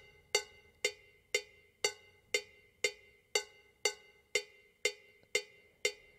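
GarageBand cowbell sample playing a steady quarter-note pattern: about two even strikes a second, each with a short metallic ring.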